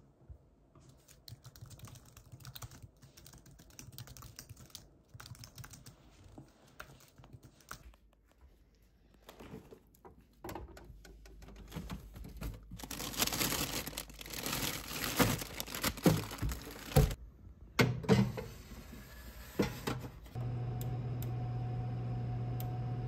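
Light typing on a computer keyboard, then louder rustling and crinkling of plastic freezer bags with knocks as a freezer drawer is rummaged through. Near the end an electric oven starts up with a steady hum.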